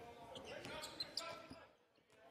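Basketball being dribbled on a hardwood arena court, with a few sharp bounces about a second in, over the hubbub of the crowd's voices in a large hall.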